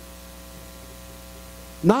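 Steady electrical mains hum, a low hum with a stack of steady higher tones, unchanging throughout. A man's voice begins right at the end.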